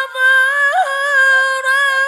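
A single unaccompanied high voice reciting the Qur'an in melodic style, drawing out one long note with slight wavers in pitch.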